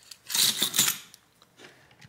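Metal hand tools clinking together on a repair mat as a flathead screwdriver is picked up from among them, a short cluster of sharp clicks about half a second in.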